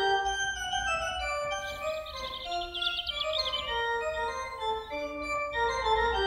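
A 200-year-old Bishop & Son pipe organ played on its soft, delicate swell stops: a Baroque-style passage of clear held notes stepping up and down in a fairly high register.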